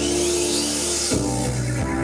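Electronic pop music played live: held synth chords under a swelling hiss that breaks off about a second in, when a new chord and a bass line come in.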